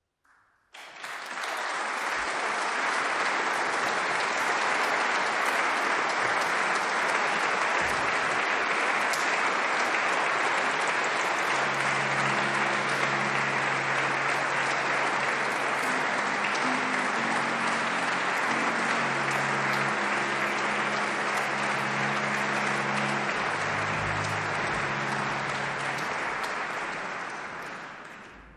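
Audience applauding steadily, starting about a second in and dying away at the end. From about halfway through, low held notes from an instrument sound faintly beneath the clapping.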